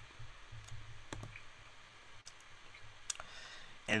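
A few scattered faint clicks of a computer mouse as web pages are selected, over a faint low hum.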